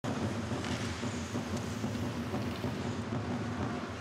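Ice hockey arena ambience during play: a steady low rumble of the rink and crowd, with a few faint clicks.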